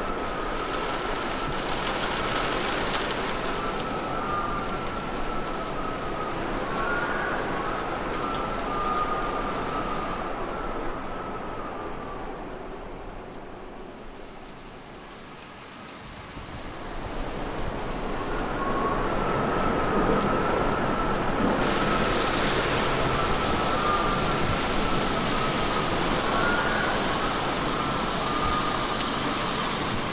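Steady rain with a thin, wavering whistle above it. It dies down around the middle and swells back up.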